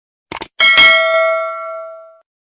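Subscribe-button sound effect: a few quick mouse-like clicks, then a notification bell struck once, ringing out and fading over about a second and a half.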